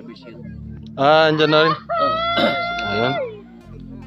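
A rooster crowing once: a call whose last note is held for over a second before falling away at the end.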